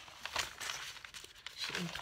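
Sheets of craft paper rustling and crinkling as they are handled and shifted, with a louder rustle about half a second in.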